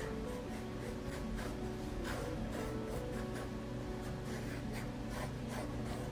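Mechanical pencil scratching on sketchbook paper in quick, repeated strokes, over background music.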